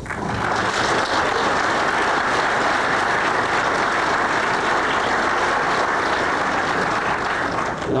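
Audience applauding, starting abruptly and holding steady for about eight seconds.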